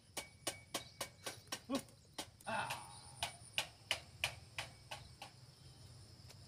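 A regular series of sharp clicks, about three to four a second, with a short break in the middle, stopping about five seconds in, over a faint steady high whine.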